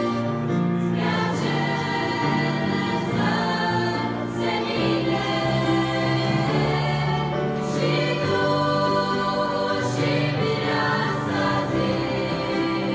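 Girls' choir singing a sacred song, voices holding long notes that shift together every second or two.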